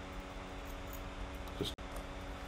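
Steady low hum of room tone with a few faint light ticks, and one short spoken word near the end.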